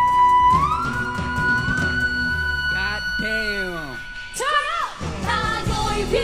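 Live pop performance: a singer holds a long high note that slides up and sustains over backing music, followed by a wavering vocal run. The full backing track comes back in near the end.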